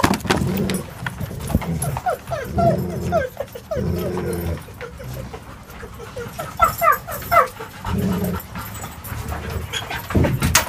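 Dogs whining and yipping in repeated short bursts, restless and excited from pent-up energy, loudest about seven seconds in.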